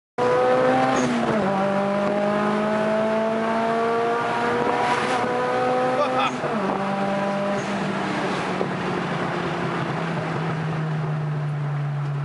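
Turbocharged Maruti Suzuki Esteem's engine heard from inside the cabin while accelerating. Its pitch climbs, drops sharply about a second in as the car shifts up, and climbs again through a long pull. A second upshift comes about six seconds in, after which the engine runs at a steady, slowly falling pitch.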